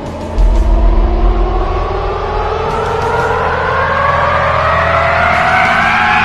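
A soundtrack riser: a pitched tone, with its overtones, climbs slowly and steadily over a deep low rumble that kicks in about half a second in, building tension.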